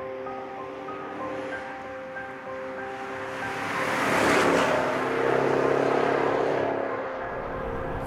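Background music with held notes, and about four seconds in a Maserati Quattroporte sweeps past, its engine and tyre noise swelling up and fading away.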